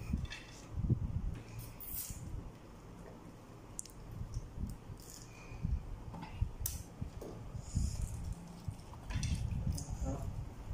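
Quiet mealtime handling sounds: soft knocks and bumps on a table with small scattered clicks and rustles as food and juice boxes are picked up and handled.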